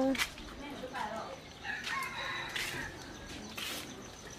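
Rooster crowing: its long, steady final note ends just after the start, followed by faint, scattered low sounds.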